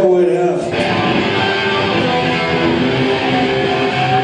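Amplified electric guitar starting a song live: after a few spoken words, a strummed chord comes in about a second in and rings on steadily.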